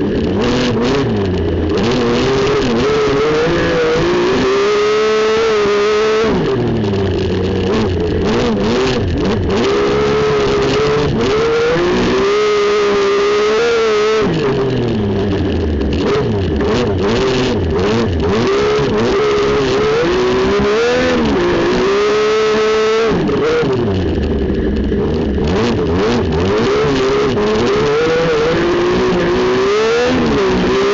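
Speedcar Wonder 850 race car engine heard from inside the cockpit, revving up through the gears and dropping back sharply when the driver lifts for corners, three times over the stretch. Between the drops the engine pitch wavers up and down.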